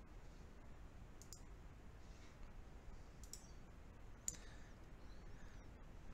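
Near-silent room tone with a few faint, light clicks from handling small hobby tools, the sharpest about four seconds in.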